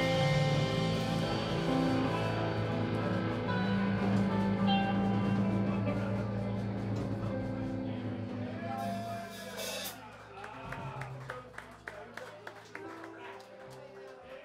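Live rock band of keyboard, electric guitars, bass and drums finishing a song: held chords ring out for several seconds, a cymbal crash lands about nine seconds in, and the sound then dies away to a few scattered clicks and knocks.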